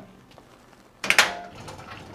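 A heavy metal battery cabinet being pushed across a concrete floor: a sharp knock about a second in, then a lower rolling rattle as it moves.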